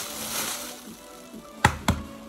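An egg knocked twice against the rim of a bowl to crack it: two sharp knocks in quick succession about three quarters of the way in.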